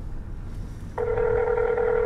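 Ringback tone of an outgoing phone call: after a second of low steady hum, a steady ringing tone starts about a second in and holds.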